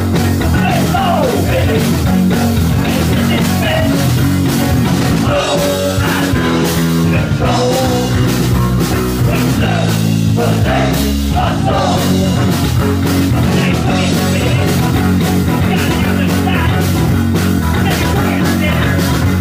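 Punk rock band playing live, loud and dense, with fast steady drums, a stepping bass line and electric guitar.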